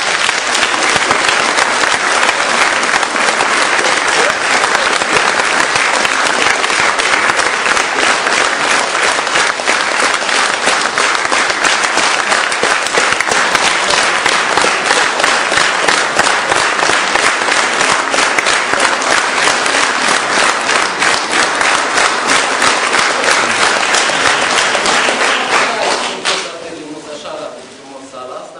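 Theatre audience applauding, many hands clapping in a dense, steady stream that stops near the end.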